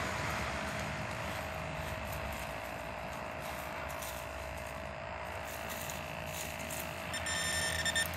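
Metal detector giving a steady, unbroken electronic tone, signalling metal in the dig hole.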